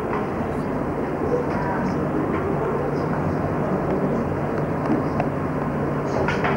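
Indistinct hubbub of a classroom of pupils talking at once while they work in groups, over a steady low hum.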